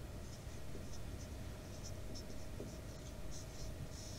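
Marker pen writing a word on a white board: a dozen or so short, faint, high-pitched strokes.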